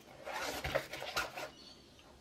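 Hands handling and turning a nylon fabric pouch: rustling and rubbing of the fabric for about a second and a half.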